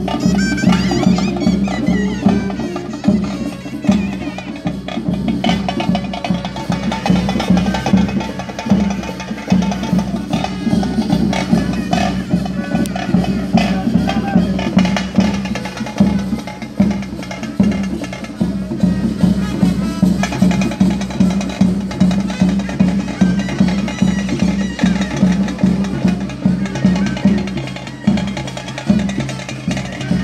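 Traditional ritual drum music: drums beaten in a steady, driving rhythm over a sustained held tone.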